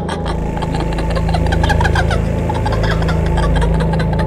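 A motor vehicle's engine idling steadily: a low hum with rapid ticking over it.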